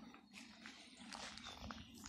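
Faint footsteps on a dry, grassy dirt path: scattered soft crunches and rustles.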